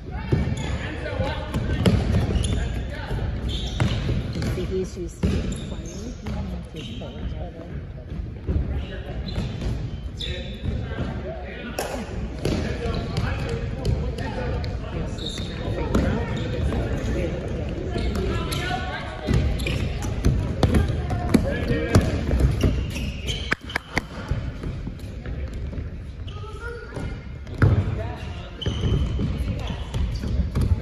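Indoor soccer on a hardwood gym floor: a ball is kicked and thuds off the floor again and again, amid players' and onlookers' voices echoing in the hall.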